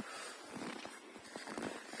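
Faint, irregular footsteps crunching in snow.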